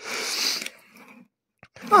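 Cardboard pizza box lid being lifted open: a brief rustling scrape of cardboard in the first half-second or so, fading out.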